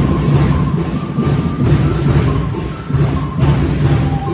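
Sinulog dance music with a heavy drumbeat, playing loud and steady.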